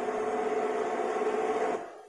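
Steady, even-pitched mechanical hum from a parked ice cream truck left running, fading out near the end.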